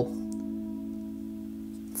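Electric guitar (Fender Stratocaster) note ringing out through a Flamma FS03 delay pedal on its Galaxy slow-modulation setting: one steady sustained tone fading slowly, with a warble from the modulation.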